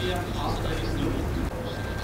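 Pigeons cooing: a few faint, low, arching coos over steady street background with distant voices.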